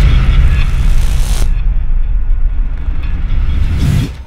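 An intro sound effect: a loud boom with a long, low rumbling tail. A hissing wash over it cuts off suddenly about a second and a half in, and the rumble swells again near the end.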